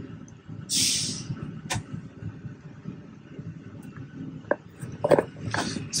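Low steady hum of a train driver's cab, with a short hiss about a second in and a few sharp clicks of keys being pressed on the cab's control panels.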